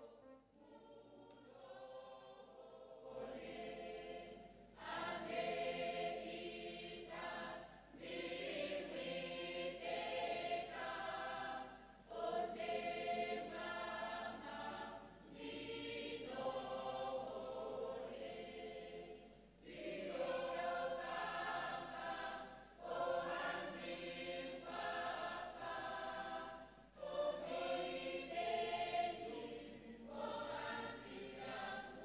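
A choir singing a hymn in phrases. It starts softly and grows louder about three to five seconds in, with short pauses between lines.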